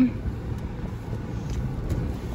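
Car cabin noise heard from inside a slowly moving car: a steady low rumble of engine and tyres.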